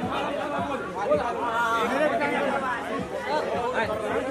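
Crowd chatter: many voices of a tightly packed group talking over one another at once, with no words standing out.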